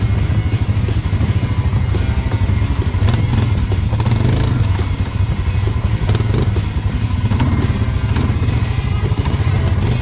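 Honda quad bike engine running steadily as the bike is ridden slowly over a rough dirt trail, with music playing alongside.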